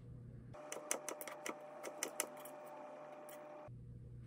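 Kitchen knife cutting mango on a plastic cutting board: a quick run of sharp taps of the blade against the board, with one more tap near the end, over a faint steady hum.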